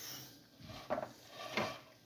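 Faint handling sounds in a kitchen, with two light knocks, one about a second in and one near the end.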